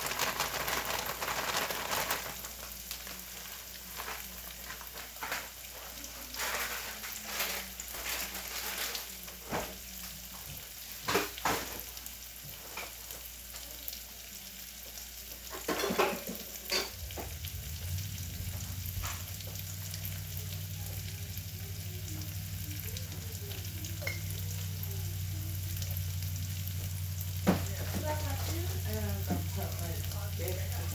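Food frying in a pan on the stove, a steady sizzle throughout. In the first two seconds a plastic snack-style bag rustles as cheese is shaken out of it, and scattered clicks and knocks follow; a steady low hum comes on a little past halfway.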